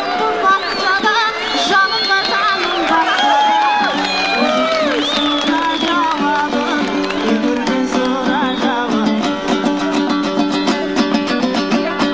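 A woman singing a Kazakh terme with bending, ornamented phrases over a plucked dombra. About halfway through, the voice stops and the dombra plays on alone in quick, even strums.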